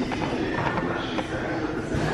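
Wooden prize wheel slowing to a stop: its pegs tick past the plastic pointer at ever wider gaps until it settles.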